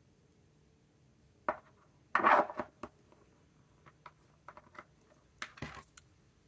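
Clicks and brief scrapes of a small glass ink sample vial being handled, set into a holder, and its screw cap taken off and put down on the table. The loudest is a short scraping rustle about two seconds in, with scattered light clicks after it.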